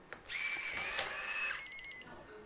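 Intelbras IFR7000+ smart lock unlocking: its motor whirs for about a second, then a quick run of high electronic beeps comes near the end.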